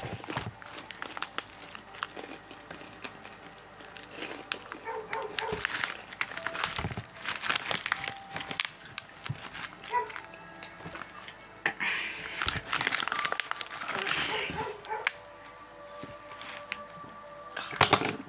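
A pit bull barking on and off, over music, with short clicks and crinkling throughout.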